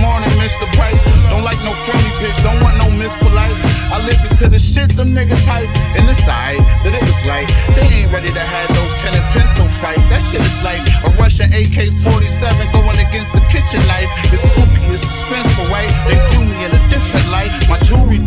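Hip hop track: a beat with heavy sustained bass and rapping over it.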